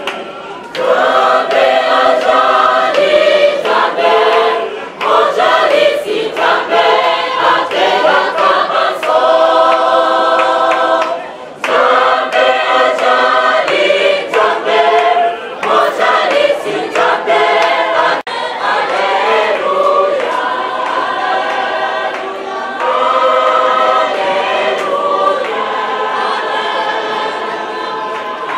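A choir of many voices singing a church hymn, in phrases with short breaks between lines.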